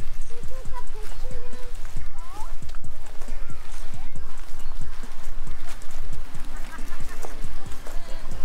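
Footsteps on loose mulch-covered ground at a steady walking pace, about two to three soft crunching steps a second.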